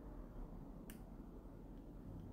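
A single short, sharp click about a second in, over faint low room hum.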